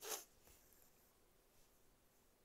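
Embroidery floss drawn quickly through cotton fabric stretched in a hoop: one short rasp, then near silence.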